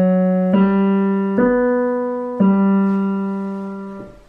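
Digital piano playing the closing phrase of a simple piece in G, both hands together: four notes struck in turn, the last held for about a second and a half and then released, so the sound stops near the end.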